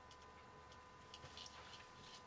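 Near silence with a few faint small clicks and rustles, mostly in the second half, from fingers working thin wires into small plastic quick-connect connectors on battery cell boards. A faint steady tone hums in the background.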